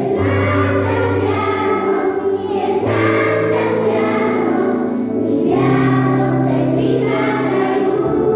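Children's choir singing with guitar accompaniment, in phrases of about three seconds over steady low notes that change with each phrase.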